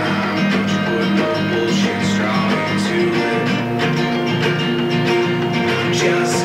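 Acoustic guitar strumming chords in an instrumental stretch of a country-style song, with no voice. The chord changes a little after halfway through.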